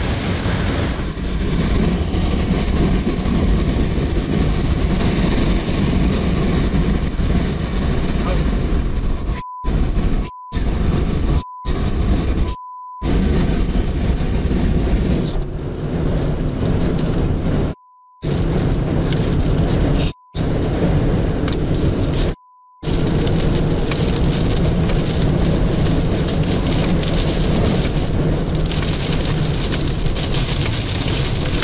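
Heavy rain and wind pounding a moving vehicle, with a steady deep rumble throughout. The sound cuts out seven times between about ten and twenty-three seconds in, and each gap is filled by a short steady beep.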